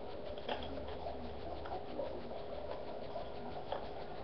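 Faint handling of a homemade paper toy gun: a few soft paper rustles and light ticks spread across a few seconds, over a steady room hum.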